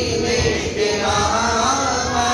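Male voices chanting an Urdu salat o salam, a devotional salutation to the Prophet, in long gliding melodic lines through a microphone.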